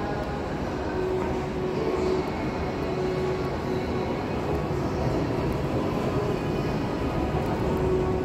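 Steady rumbling hum of an underground metro station, with a low tone that comes and goes.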